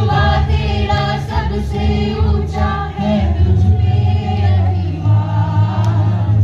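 A mixed group of men and women singing a Hindi song together in unison into a microphone, over a steady low drone.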